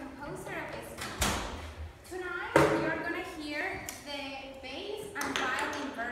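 A woman speaking to an audience, broken by two sharp knocks: one about a second in and a louder one just before halfway.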